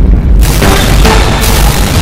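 Loud background music with a heavy bass beat and a bright, noisy hit roughly once a second.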